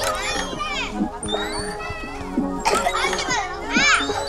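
Children squealing and laughing in delight while swinging on a nest swing, the loudest squeals near the end, over background music.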